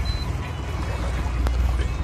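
Boat engine running with a steady low drone under the splash and wash of water along the hull, with one sharp knock about halfway through.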